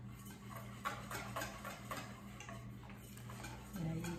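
Metal utensil clicking against a stainless steel mixing bowl, several light irregular taps a second, as egg yolk mixture is stirred while warm milk is ladled in to temper it.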